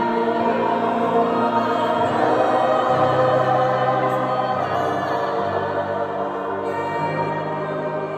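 Mixed choir singing sustained chords, with a low bass line coming in about three seconds in.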